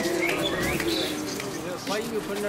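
Bird calls, with short rising chirps in the first second, over people's voices.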